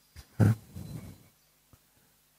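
A man's brief wordless vocal sound, low-pitched and about a second long, starting about half a second in, then a single faint click near the end.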